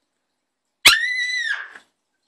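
A child's high-pitched excited squeal, about a second long, starting suddenly just under a second in with a slight rise and then a fall in pitch before it fades.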